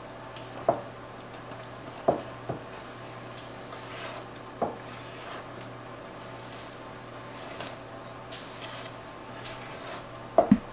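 Wooden spoon stirring cake batter by hand in a stainless steel mixing bowl: soft wet squishing, with a few sharp knocks of the spoon against the bowl, once about a second in, twice around two seconds and once near five seconds.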